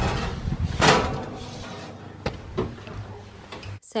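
Cake tin set down on an oven's wire rack, then the oven door shut with a clunk about a second in, followed by a couple of light clicks.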